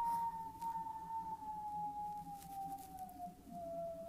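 A man whistling one long, slowly falling note, the falling-bomb whistle of a missile coming down.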